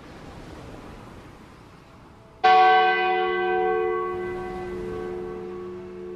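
A church bell struck once about two and a half seconds in, its deep ringing tone with many overtones hanging on and slowly fading. Before it, a soft hiss swells and dies away.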